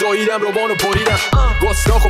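Hip-hop remix track: a rapped vocal over a beat, with deep bass and kick drum coming in just over a second in.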